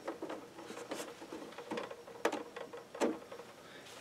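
Light clicks and taps of hard plastic toy parts being handled, as a small sliding deck panel of a plastic toy sail barge is worked; about three sharper clicks stand out, one roughly a second in and two more later.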